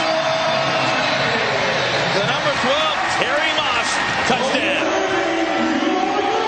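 Crowd din at an indoor arena football game: many overlapping voices blending into a steady noise, with indistinct shouts standing out now and then.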